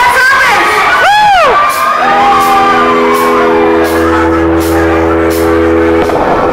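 Bar crowd cheering with a loud whoop that rises and falls about a second in. The band then holds a sustained chord, with a low bass note joining near the middle and a steady high cymbal tapping.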